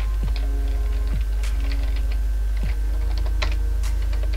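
Computer keyboard typing: a handful of separate keystroke clicks spread over a few seconds, as a word is typed out. Under them runs a loud, steady low electrical hum.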